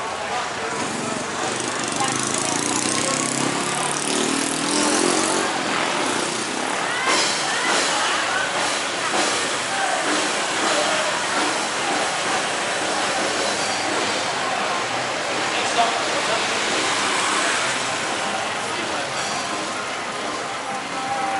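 Busy night-street ambience: motorbikes and a pickup-truck taxi passing close by on the road, with voices of people walking nearby.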